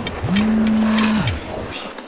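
Mobile phone vibrating with an incoming call: one low buzz of a little over a second that rises in pitch as it starts and drops as it stops, with light clicks over it.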